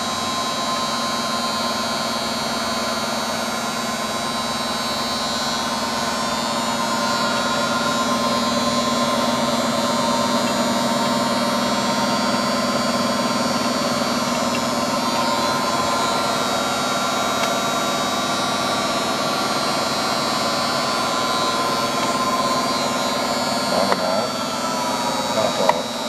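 Bennet CG-14 rotary-table grinder running under power, its motors giving a steady electric hum and whine as the round table turns. A few short clicks come near the end.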